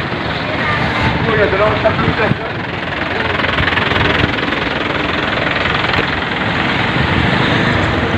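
Steady rush of wind on the microphone mixed with street traffic, picked up by a camera carried at a jog, with a few brief voices between about one and two seconds in.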